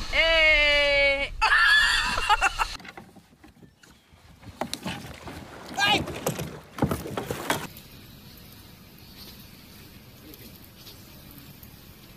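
A loud, long shout sliding down in pitch, then a splash of water; a few scattered voices follow.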